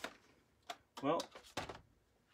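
A man's voice saying "well", with a single brief click just before it as something is set down on the counter.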